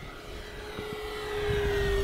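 Electric motor and propeller of an FMS Zero 1100 mm RC warbird at full throttle: a steady whine that dips slightly in pitch. The sound grows louder in the second half, with a low rumble underneath.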